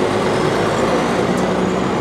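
A bus engine running close by, a steady noise with street traffic behind it and a faint slowly rising whine.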